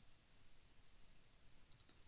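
Near silence: room tone, with a few faint small clicks near the end.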